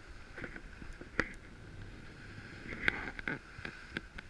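Skis gliding over freshly groomed powder snow: a steady swishing hiss broken by a few sharp clicks, the clearest about a second in and around three seconds in.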